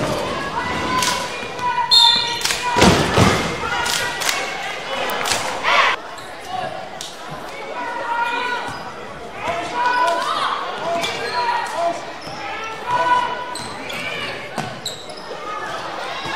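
A basketball being dribbled on a hardwood gym floor, a run of sharp bounces, under people talking and calling out in the echoing gym.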